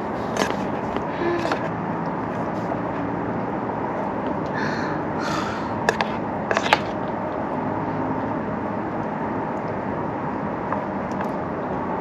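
Steady hiss of food cooking in a pan on a camp stove, with a few light clicks of a utensil against the pan.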